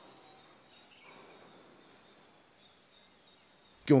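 Near silence: a faint, even background hiss with a thin steady high tone, in a pause between speech. A man's voice resumes near the end.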